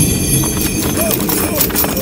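Sound effect of hooves clip-clopping, a run of quick clicks, with a couple of short voice-like calls over it.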